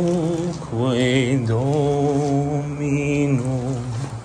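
A man singing unaccompanied in long held notes with a slight vibrato: a short phrase, a breath just after the start, then one long phrase ending near the end.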